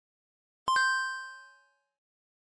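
A bright chime sound effect, struck twice in quick succession about two-thirds of a second in, ringing out over about a second. It marks a procedure step being checked off as complete.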